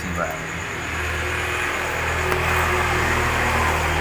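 A motor vehicle's engine running nearby: a low, steady rumble that grows louder from about a second in.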